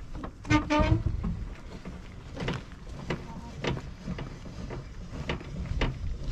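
A few scattered clicks and knocks, spaced unevenly, as a caravan's support leg is hand-cranked with a crank handle. A brief voice sound comes about half a second in.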